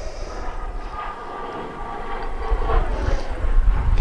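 An airplane passing overhead: a steady engine rumble with a faint whine, growing louder toward the end.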